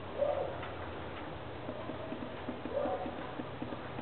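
A bird's short, low cooing call, heard twice about two and a half seconds apart, over a faint run of ticks in the middle.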